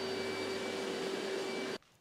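Steady whirring machine noise with a constant hum from equipment running in a car-detailing bay. It cuts off suddenly near the end.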